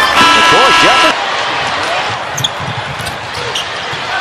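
Basketball arena game sound: a brief held chord of arena music cuts off about a second in. After that a basketball is dribbled on the hardwood court over the murmur of the crowd.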